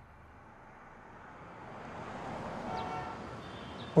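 Street traffic noise fading in and swelling as a vehicle passes, loudest about three seconds in.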